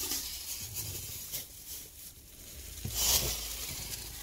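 Thin plastic shopping bag rustling and crinkling as it is handled and rummaged through, with a louder rustle about three seconds in.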